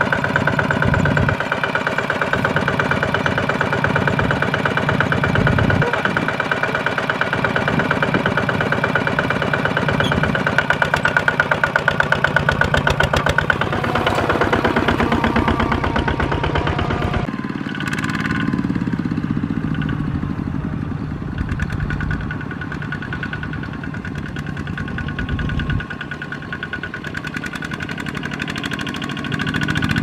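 Kubota ZT155 power tiller's single-cylinder diesel engine running with a rapid, steady chug. The sound changes abruptly a little over halfway through and runs somewhat quieter after that.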